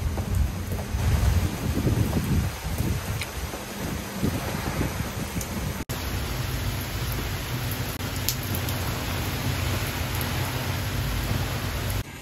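Steady rain falling, a continuous even hiss, with a low rumble in the first couple of seconds. The sound briefly drops out about six seconds in.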